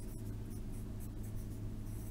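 Pencil writing on lined notebook paper, a run of short scratchy strokes over a faint steady low hum.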